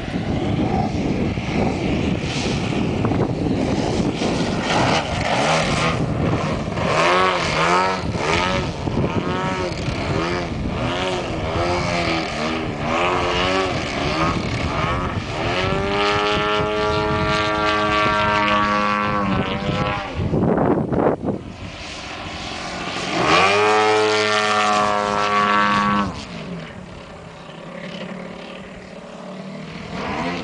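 A DA-120 twin-cylinder two-stroke petrol engine and propeller on a 104-inch Extra aerobatic RC model plane in flight. Its pitch sweeps up and down over and over, with two long steady high-power stretches, the second cutting back suddenly near the end.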